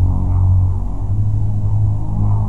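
A steady, loud low hum with a constant pitch, running without a break and dipping slightly in level about a second in.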